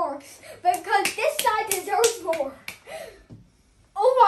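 A boy's voice making short wordless vocal sounds, mixed with several sharp hand taps.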